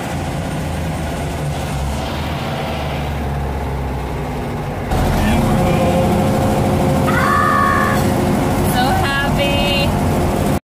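Air-cooled flat-four engine of a lifted VW Baja Bug running while the car drives, heard from inside the cabin. About halfway through it gets suddenly louder, and a woman's high-pitched laughing rises over the engine through the second half.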